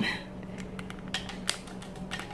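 Curly lettuce leaves being torn by hand over a glass bowl: a few faint crisp snaps a little past a second in, over a steady low hum.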